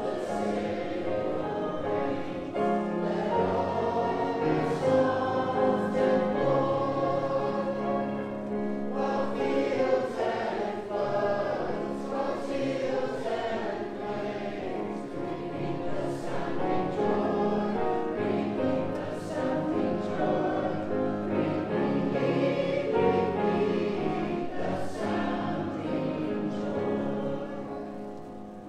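Church congregation singing a hymn together, in steady sustained phrases.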